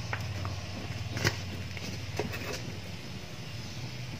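A few light knocks and clicks of an aluminium tube cake pan being handled and lifted off a cake turned out onto a plate, the sharpest about a second in, over a steady low hum.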